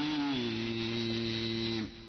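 A man's voice chanting a Quranic recitation, stepping in pitch early and then holding one long, steady note that breaks off just before the end.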